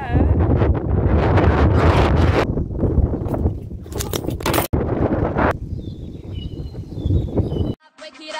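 Wind buffeting the camera's microphone, a heavy rumble mixed with rustling handling noise as the camera is swung about. It drops to a quieter hiss about five and a half seconds in and cuts out just before the end.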